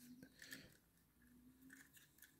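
Near silence: room tone, with faint handling noise from a model locomotive being turned in the hands.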